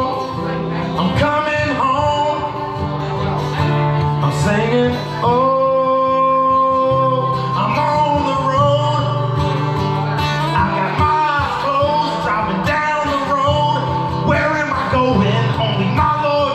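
Live acoustic country-blues music: acoustic guitar playing under a lead melody of long held notes that bend in pitch, with no words.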